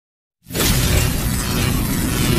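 Intro sound effect: after a brief silence, a sudden loud shattering crash comes in about half a second in and carries on as a steady dense rush of noise.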